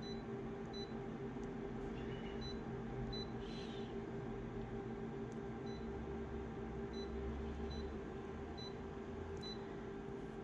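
Touchscreen control panel of an office multifunction photocopier giving a short high beep at each key press, about a dozen beeps at irregular intervals as menu options are tapped. A steady low hum runs underneath.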